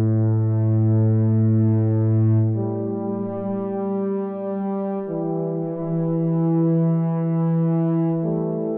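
Yamaha SY77 FM synthesizer playing a detuned, analog-style pad patch: three sustained chords, changing about two and a half seconds in and again about five seconds in.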